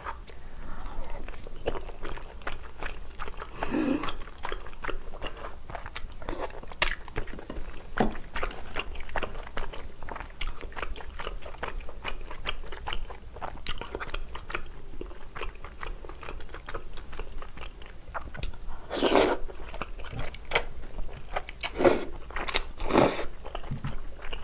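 Close-miked chewing of tteokbokki rice cakes and flat glass noodles: a run of wet mouth clicks and smacks, with a few louder, longer bursts about two-thirds of the way in and near the end.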